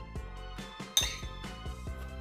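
Background music with a steady beat. About a second in, a single sharp, ringing clink of a metal spoon against a pressed-glass dish.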